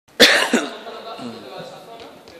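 A person coughing twice close to the microphone, the first cough the loudest, followed by quieter voices.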